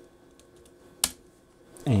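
A few faint computer keyboard taps, then one sharp keystroke about a second in.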